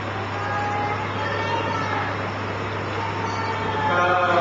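Steady background noise with a constant low hum and faint, indistinct voices.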